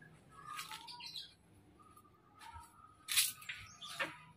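A bird giving short, harsh squawking calls in a few bursts, the loudest about three seconds in.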